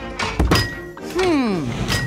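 Cartoon sound effects for a giraffe crane lifting a log: wooden knocks about half a second in, then a long tone sliding down in pitch, over background music.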